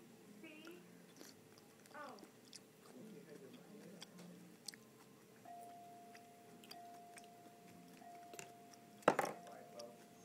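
A toddler eating with her fingers from a bowl: faint chewing and small handling sounds over quiet voices in the background, with a thin steady tone from about halfway and one sharp knock near the end.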